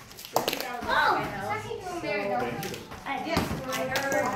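A soccer ball kicked barefoot in a room, a sharp thud about half a second in, with another knock near the end. Children's voices call out excitedly in between.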